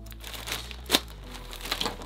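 Plastic poly mailer bag crinkling as it is handled and opened, with one sharp crackle about halfway through.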